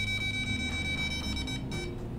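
Handheld EMF meter's beeper giving one steady, high-pitched tone that cuts off just before the end. The meter is held to a UPS power supply, whose strong field pegs the needle into the red zone of about two to five milligauss.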